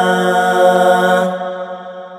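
A man's voice holding the long final note of the chanted Arabic phrase 'subhanahu wa ta'ala', steady in pitch, then fading out over the last second.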